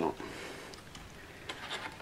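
Faint handling noise of a wire model roof truss being pushed and shifted in a wooden jig, with a few light clicks near the end.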